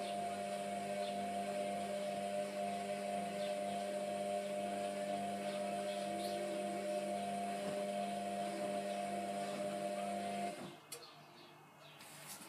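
Hotpoint Aquarius WMF720 washing machine running a wash tumble: a steady motor hum with water and suds sloshing in the drum, which cuts off about ten and a half seconds in.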